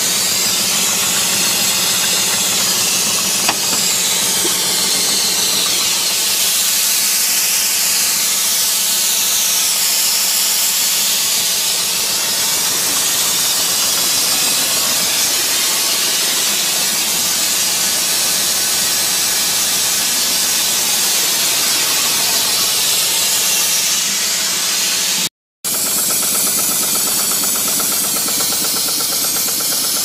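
Loud, steady hiss of escaping steam from a small coal-fired model steamboat boiler and steam plant, broken by a split-second dropout about 25 seconds in.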